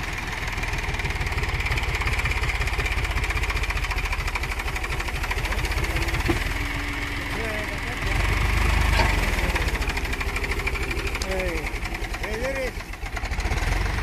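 HMT 3522 DI tractor's diesel engine working under load as it pulls a fully loaded trolley, running with a steady, even firing beat and growing louder for about a second around eight seconds in. Shouting voices come in over it in the second half.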